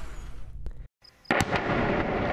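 Battle sounds from war footage: after a cut of dead silence, two sharp bangs just past the middle, then continuous loud noise of fighting.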